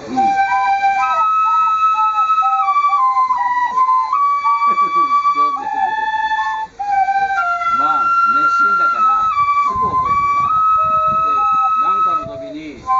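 Two shinobue, Japanese bamboo transverse flutes, playing a slow melody together in long held notes that step up and down.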